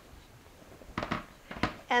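A stainless slow cooker handled on the countertop: a couple of short knocks, about a second in and again a little later, after a quiet start.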